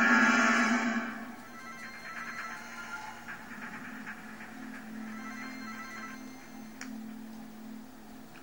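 Dramatic music swells and fades out in the first second, then a phone ringtone rings over and over for several seconds, over a steady low hum. All of it is heard through a television's speaker.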